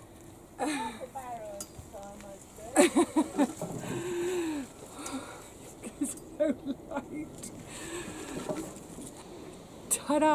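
A woman's voice without clear words, in short pieces with gaps: a quick run of laugh-like bursts and a drawn-out call.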